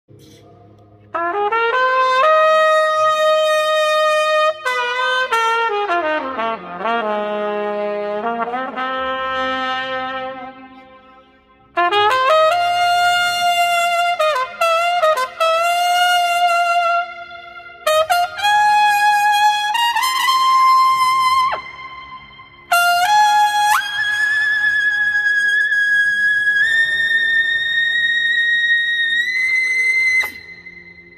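Solo trumpet warm-up: phrases of slurred notes and bends, with short pauses between them, including a long downward glide and climb back up. It ends on a long held high note that edges up slightly near the end.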